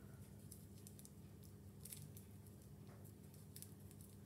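Near silence over a low steady hum, with a few faint scattered ticks and rustles of thin plastic film being picked at: the wrapper of an individually wrapped cheese slice that won't peel.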